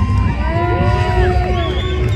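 A crowd cheering over loud music with a heavy bass, with a few long held voices or notes in the middle.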